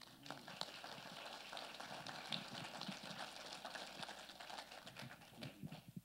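Small congregation applauding, a light patter of many handclaps that dies away near the end.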